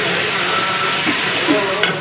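Spiced masala sizzling in a steel kadhai over a wood fire, a steady hiss as it is stirred with a ladle, with a single sharp click near the end.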